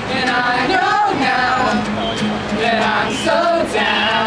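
Male voice singing over a strummed acoustic guitar, with other voices singing along.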